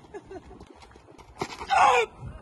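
A loud, short human shout near the end, falling in pitch, over faint background chatter.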